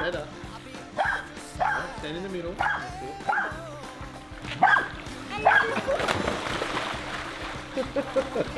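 A dog barking in a string of short, sharp barks, about one every half second to a second, over background music. Water splashing comes in during the last couple of seconds.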